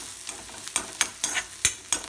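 Steel ladle scraping and clinking against a steel kadai as chopped ginger and dried red chillies are stirred in hot oil: a quick, irregular run of sharp scrapes over a steady sizzle.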